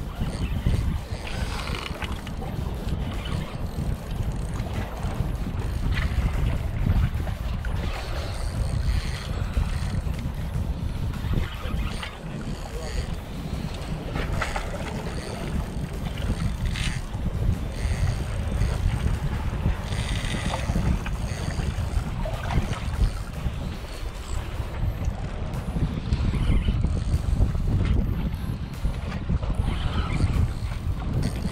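Wind buffeting the microphone over open water, with scattered clicks and short whirs from a spinning reel as a fish is played on the line.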